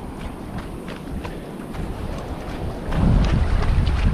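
Wind buffeting the microphone of a camera carried by a runner, with faint, regular footfalls on sand. The wind rumble grows heavier about three seconds in.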